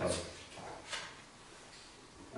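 Quiet pause in a meeting room: faint room tone with a brief soft noise about a second in.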